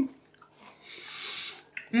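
Mouth sounds of a person eating a spoonful of crème brûlée: a soft hissy sound lasting about a second in the middle, between appreciative hums.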